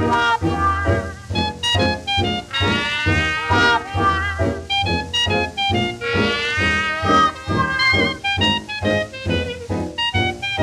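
Early-1930s jazz dance band recording playing an instrumental opening: held, gliding melody lines from the horns over a steady beat of about three strokes a second and a sustained bass.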